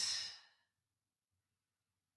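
A woman's soft breathy exhale, a sigh that fades out about half a second in, followed by near silence.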